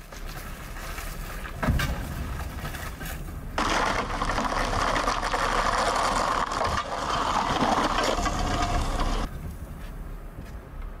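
A car rolling slowly on a wheel wrapped in cola-filled plastic bottles, the bottles rumbling and crunching over the asphalt, with one sharp knock about two seconds in. From about three and a half seconds the rolling noise is much louder and closer, then cuts off suddenly near the end.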